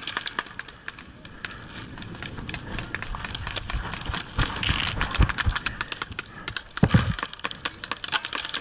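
Irregular clatter of a player moving on foot over dirt with a pump paintball marker: footsteps and paintballs rattling in the marker's gravity hopper. A few heavier low thumps come in the second half.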